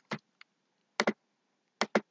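Computer mouse clicks: a single click, then a quick double click about a second in and another near the end. They are the sound of clicking through the video player's settings menu to change playback speed.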